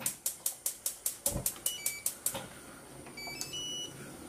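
Typewriter-style clicking sound effect: a quick, even run of about a dozen sharp clicks, about five a second, followed by a few short high beeps.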